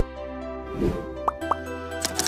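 Logo-animation intro music: sustained synth chords with a sharp click at the start, a falling swoop just before the middle, and two quick rising pops in the second half.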